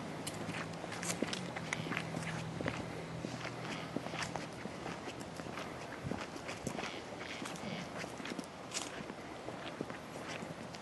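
Footsteps of several people walking along a trail: a steady run of irregular, overlapping steps.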